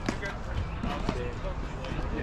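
Pickleball rally: sharp pops of the hard plastic ball struck off paddles and bouncing on the court, two strong hits about a second apart.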